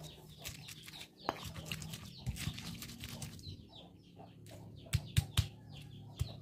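Stone pestle grinding chillies, garlic and shallots in a stone mortar (ulekan and cobek): a run of scraping and small knocks of stone on stone, with a few sharper knocks near the end.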